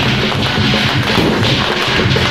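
A string of firecrackers going off in rapid, continuous crackling pops, over loud music with a low sustained tone.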